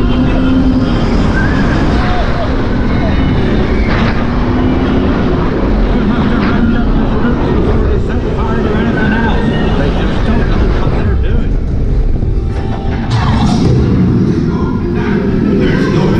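Roller coaster ride recorded from the front row: wind rushes over the camera microphone and the motorbike coaster train rumbles along its steel track. Faint voices and music from the ride are mixed in.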